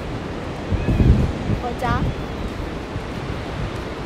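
Steady wash of ocean surf with wind buffeting the phone's microphone in low rumbling gusts, strongest about a second in.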